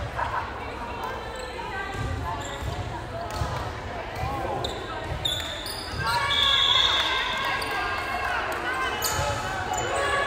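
Players and spectators calling and shouting in an echoing gymnasium, the calls growing louder about six seconds in as a volleyball rally gets under way. A few dull thuds of a ball on the hardwood floor come in the first half.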